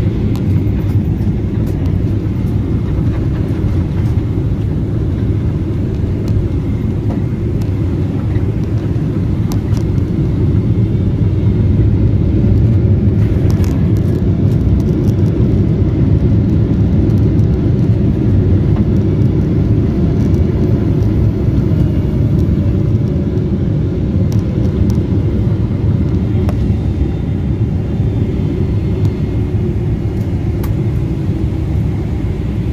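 Cabin noise of a Boeing 777-300ER rolling along the taxiway after landing: a steady low rumble from the wheels on the pavement and the GE90-115B engines at idle. A faint whine falls in pitch about two-thirds of the way through.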